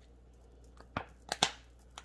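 A few short, sharp clicks and a light rustle from handling a plastic spice shaker, about a second in.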